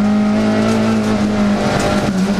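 Rally car engine heard from inside the cabin, running hard with a steady, even note; the note shifts briefly near the end.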